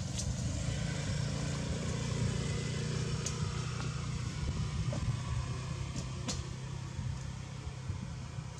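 Steady low hum of a running engine, with a few faint clicks over it.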